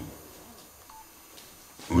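Low room tone in a hall between phrases of a man speaking through a microphone, with one brief faint beep-like tone about halfway through. Speech picks up again at the very end.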